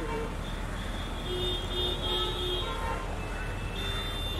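Street traffic: a steady low engine rumble with several held high tones over it that come and go.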